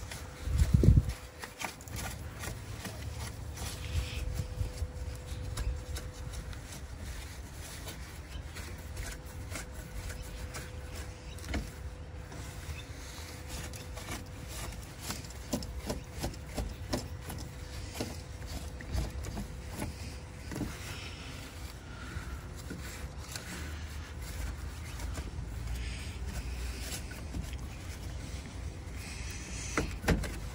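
Cloth rag rubbing and scraping over the plastic grille surround and the finned radar sensor housing as cobwebs are wiped off, with scattered small clicks and knocks over a low rumble. A louder thump comes about a second in.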